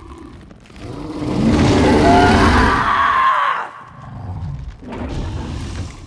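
A film monster's loud roar, swelling about a second in and cutting off sharply after three and a half seconds, with a low rumble around it.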